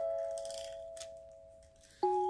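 Gentle chime music of bell-like mallet tones: a held chord fades away over about two seconds, and a new phrase of notes starts right at the end. Under it, a short rustle and scrape of paper being handled, with a click about a second in.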